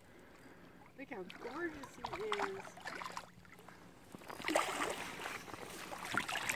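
A big cutthroat trout splashing and thrashing at the water's surface as it is played in on the line, in uneven bursts over the last couple of seconds. A faint, distant voice comes in earlier.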